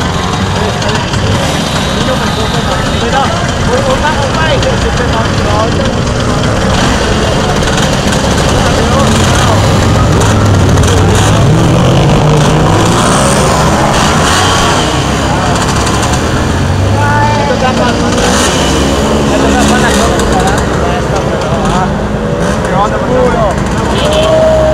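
Several vintage Vespa scooter engines running under load as the scooters climb a steep hill, the engine note rising about halfway through, mixed with the voices of people close by.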